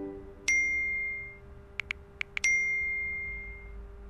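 Two phone message chimes, each a single bright ding that rings out for about a second, with four quick soft taps of phone-keyboard typing between them as a text is written and sent.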